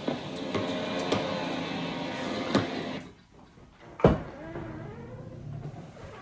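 Gas leaf blower running steadily for about three seconds, then stopping suddenly, followed by a single sharp knock about a second later.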